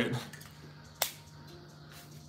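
A single sharp click about a second in, from the all-metal fountain pen being handled, over a faint steady low hum.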